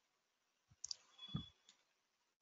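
Near silence broken by a few faint sharp clicks and a soft low thump about one and a half seconds in: small handling noises at a computer desk, picked up by the microphone.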